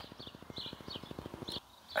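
Birds chirping faintly in the background, short scattered calls, over a fast, even ticking that stops shortly before the end.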